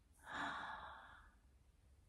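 A woman's single breathy sigh, about a second long, loudest at its start and trailing off.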